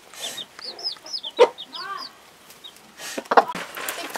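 Chickens in a coop: young chicks peeping in quick, short, high chirps through the first two seconds, with a lower hen cluck among them. A couple of sharp knocks come near the end.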